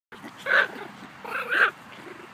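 Small dog barking twice during play, the second bark longer than the first.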